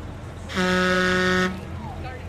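A vehicle horn sounds once, a single steady blast about a second long.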